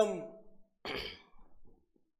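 A man's voice trails off at the start, then a single short audible breath out, a sigh-like exhale, about a second in.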